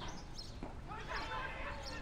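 Faint, distant voices over quiet outdoor field ambience.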